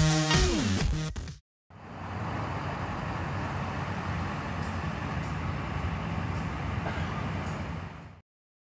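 Electronic dance music plays for about the first second and a half and then cuts off. After a short gap, a steady outdoor background of distant road traffic with a low rumble continues, with a few faint clicks.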